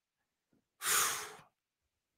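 A single breath about a second in, lasting about half a second, from a man pausing mid-sentence; the rest is silence.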